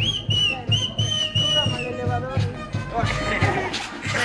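Brass band music: long held wind notes over a steady bass drum beat, about four strokes a second.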